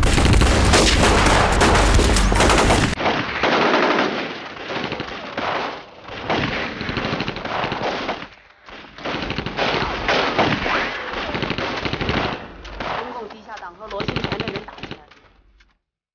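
Dramatized gunfire: rapid machine-gun and rifle fire in a firefight. It is densest and loudest for the first three seconds, then goes on in thinner, uneven bursts that die away shortly before the end.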